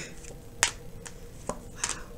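A sharp tap about half a second in and a softer one a second later: tarot cards being laid down on a glass tabletop.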